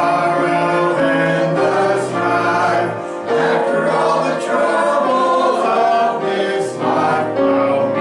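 Small mixed choir of men and women singing a hymn together, holding long notes, with a short breath pause about three seconds in.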